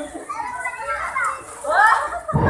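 Young children playing: overlapping high-pitched chatter and calls, with one rising call near the end.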